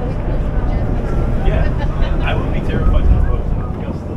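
Steady low rumble of a passenger ferry under way, swelling slightly about three seconds in, with people talking in the background.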